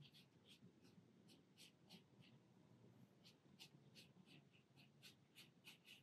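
Faint strokes of a paintbrush on watercolour paper: short, scratchy strokes coming irregularly a few times a second.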